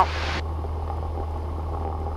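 Cessna 172's piston engine idling steadily, heard as a low, even drone through the cockpit intercom. A higher hiss from the intercom cuts off about half a second in.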